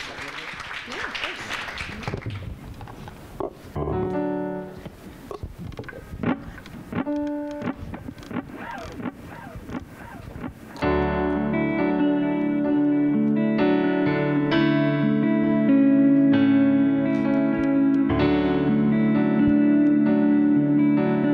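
Audience applause that dies away over the first couple of seconds, then a few scattered single notes on a digital keyboard. About eleven seconds in, a song's instrumental intro starts on keyboard and guitar with sustained chords, louder than what went before.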